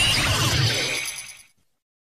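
A crashing sound effect from a transformation-belt sound edit starts suddenly and fades away over about a second and a half, then cuts to complete silence.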